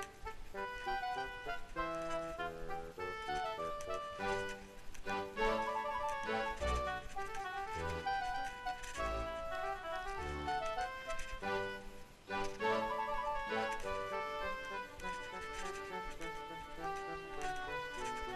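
Background music: an instrumental tune of held melody notes over recurring low bass notes.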